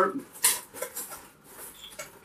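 Cardboard packaging being handled and pulled out of a larger cardboard box: a few short scraping rustles, the loudest about half a second in, then fainter ones.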